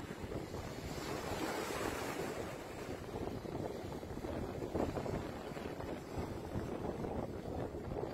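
Surf washing onto a sandy beach with wind buffeting the microphone: a steady rushing noise that swells now and then.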